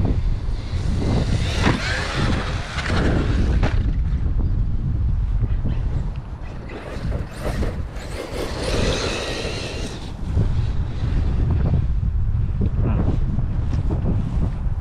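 Wind buffeting the microphone, with an 8S brushless electric RC monster truck's motor whining as it speeds up and slows down, twice: once near the start and again a little past the middle.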